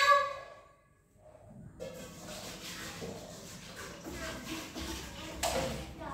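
Dishwashing at a kitchen sink: a steady, even wash of noise from about two seconds in, with a louder sudden sound about five and a half seconds in. A short voice opens, followed by a brief gap of silence.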